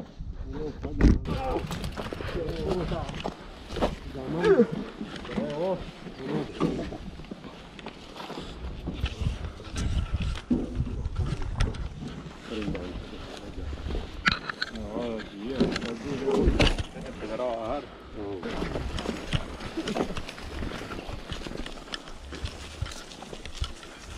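Several people talking and calling out, not close to the microphone, with a few sharp knocks of mountain bikes being handled, the loudest about a second in.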